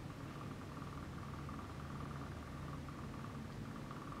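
Quiet, steady background hum of laboratory equipment, with a faint steady high tone over a low drone and no distinct events.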